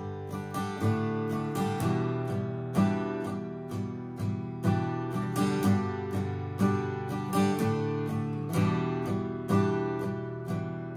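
Acoustic guitar strummed in steady down strums through a G, D, E minor chord progression, with a light upstroke flick on the lower strings at the chord changes. A stronger accent falls about once a second.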